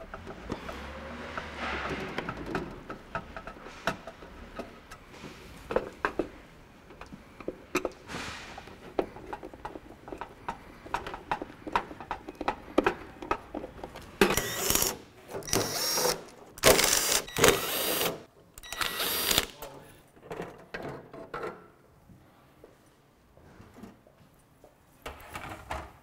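Screws being taken out of a thermoelectric wine cooler's sheet-metal back panel: scattered clicks and scrapes of the tool against the metal, and a run of five short power-drill bursts a little past the middle.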